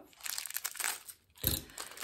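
Crinkling packaging being handled and pulled off a small bag's fittings, a quick run of crackles, a brief pause, then one soft knock about one and a half seconds in.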